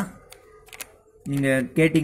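A man speaking Tamil, with a pause in the first second that holds a few light clicks.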